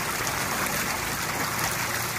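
Steady rush of churning, splashing swimming-pool water at the pool's edge.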